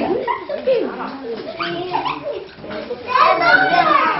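Young children's voices talking over one another, louder about three seconds in.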